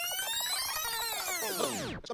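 A synthesized transition sound effect: many tones gliding upward together, then curving back down in pitch, cutting off suddenly at the end.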